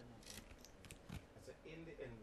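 Faint, scattered clicks and rustles as small plastic counters are tipped out of a paper envelope into a hand.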